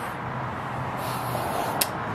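A steady low hum and hiss of background noise, with a single sharp click near the end from handling the leaf blower's plastic air filter cover.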